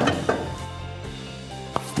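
Split firewood logs knocking against each other and the metal loading chamber of a Froling FHG gasification boiler as they are stacked in by hand. One knock comes right at the start with a few lighter ones after it, and another comes near the end, over soft background music.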